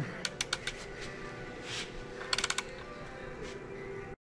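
Ratchet of a torque wrench clicking on the main bearing cap bolts of a Cummins ISL crankshaft: a few separate clicks in the first second, then a quick run of clicks a little past the middle, over a faint steady tone.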